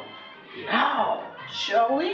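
A person's voice in two drawn-out, pitch-bending exclamations, over background music.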